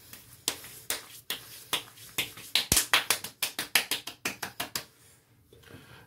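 Palms slapping aftershave onto freshly shaved face and neck: a run of about twenty sharp skin slaps, quickening to about five a second in the middle and stopping about five seconds in.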